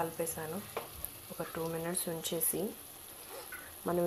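Thick pav bhaji masala frying in a pan, stirred and scraped with a slotted spatula, under a person talking. The talking is the loudest sound, in the first half and again near the end.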